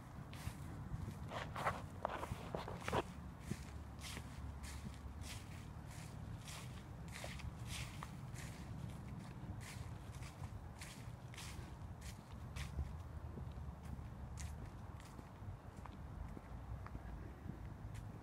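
Footsteps walking at a steady pace, just under two steps a second, along a tarmac path scattered with fallen autumn leaves, over a low steady rumble. The steps are a little louder around two to three seconds in.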